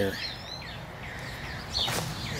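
Birds chirping: a few short, high, curving calls repeated over faint outdoor background noise, with a brief click near the end.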